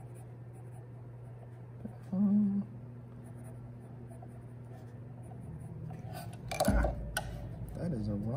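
Graphite pencil sketching lightly on drawing paper over a steady low hum. A short hummed 'mm' comes about two seconds in, and near the end there is rustling paper with a thump as the hands come down on the sheet.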